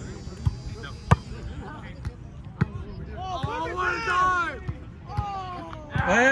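A volleyball struck sharply by a hand about a second in, with fainter knocks around it, then several players shouting to each other in the second half.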